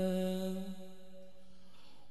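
A man's voice holding one long, steady sung note of an Arabic devotional hadroh song into a microphone. The note grows quieter about a second in and stops at the very end.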